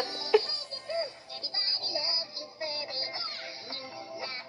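2023 Furby toy singing in its high electronic voice over a bouncy backing tune: its Dance Party mode.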